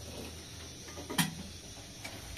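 An aluminium kettle and a metal teapot handled while pouring: one sharp metal clink with a brief ring a little over a second in, over a faint steady low hum.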